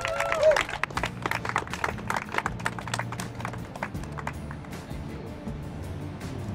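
A small audience clapping by hand after an acoustic guitar song ends. The song's last sung note trails off in the first half second.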